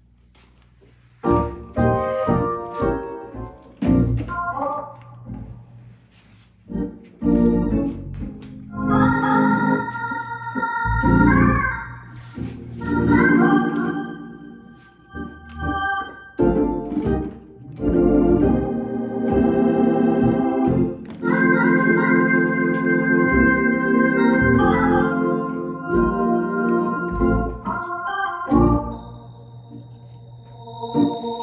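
Electric organ played solo, starting about a second in with chords and quick runs, then longer held chords in the second half.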